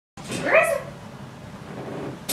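A dog gives one short, high-pitched whine that rises and falls over about half a second, from excitement at the start of a scent search.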